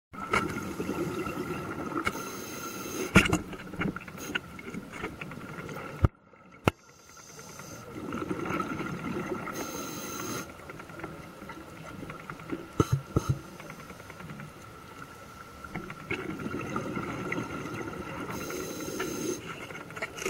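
Scuba diver's regulator breathing underwater: a hissing breath swelling into a bubbly exhale about every eight seconds, over a steady faint high tone, with a few sharp clicks.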